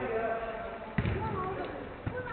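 Players' voices calling out during a five-a-side football match, with one sharp thud of the football being kicked about a second in.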